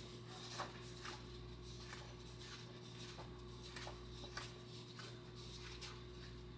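Quiet room tone with a steady low electrical hum and a handful of faint, scattered clicks.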